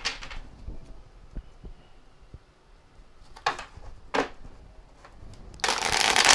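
A tarot deck (the Tarot of Dreams) being shuffled by hand. Two short swishes of cards come in the middle, then a longer, louder rush of cards near the end.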